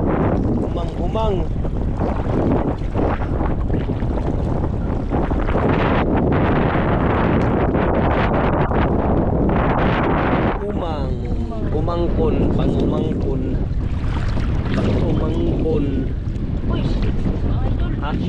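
Strong wind buffeting the microphone, a steady low rumbling roar, with brief snatches of voices breaking through a few times.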